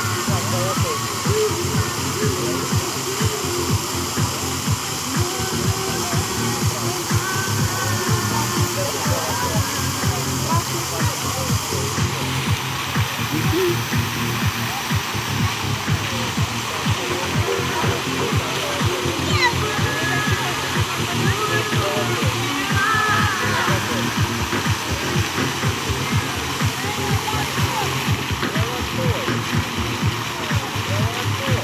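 Music playing with people's voices over a steady rushing noise.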